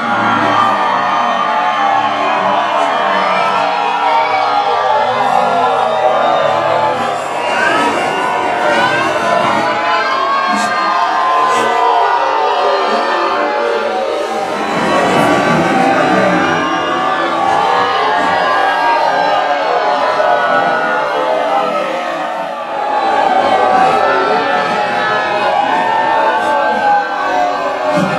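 Background music playing continuously, with a crowd cheering and shouting underneath.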